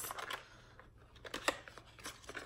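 Small cardboard product box being opened by hand: a few short, light clicks and taps as the flaps and packaging are handled.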